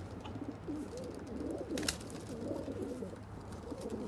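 Several racing pigeon cocks cooing, their low calls overlapping steadily, with one sharp click about two seconds in.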